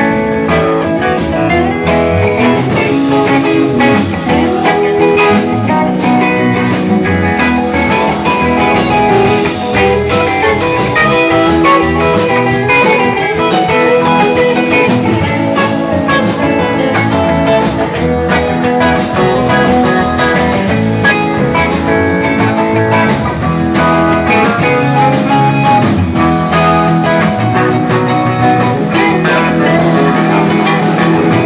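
A rock band playing live, with electric guitars leading an instrumental passage over a steady beat.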